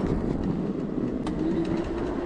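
Emmo Oxe fat-tire e-bike rolling through snow: a steady rumble of the wide tyres and drive, with a faint steady tone in the second half.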